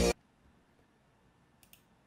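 Playback of a soul-guitar sample being chopped in FL Studio cuts off abruptly at the start, leaving near silence broken by a few faint computer clicks about a second and a half in.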